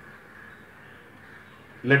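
A short lull with faint background noise, then a man's voice starts speaking near the end.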